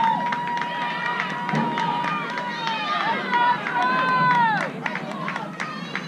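Several voices shouting and calling out in long, drawn-out yells that waver and slide in pitch, louder in the first two-thirds and dying down near the end.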